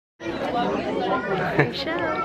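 After a brief silence, several people suddenly start talking over one another.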